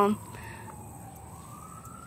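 Faint siren wailing: a single tone that dips slightly, then slowly rises in pitch.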